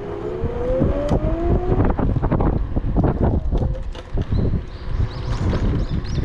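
Electric scooter in motion: wind rumbling on the microphone and knocks and rattles from the ride over the road. In the first two seconds the electric motor gives a whine that rises in pitch as the scooter speeds up.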